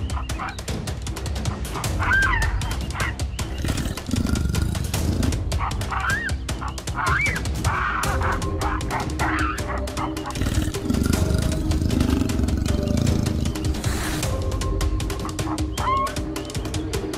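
Baboons giving loud, short barks, several calls that rise and fall in pitch, the alarm calls of a troop fleeing a leopard. Music plays underneath.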